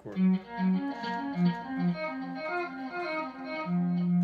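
Electric guitar picking a single-note pattern, about two to three notes a second, through a tempo-synced echo that fills in every other note; the line plays the third of each chromatic passing chord rather than its root, so the echoes do not clash a semitone apart. A steady held note comes in near the end.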